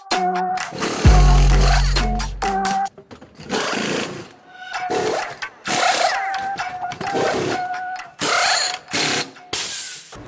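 Electronic music with a heavy bass hit about a second in, over repeated short bursts of pneumatic wheel guns rattling as a race car's wheel nuts are undone and tightened during a pit-stop tyre change.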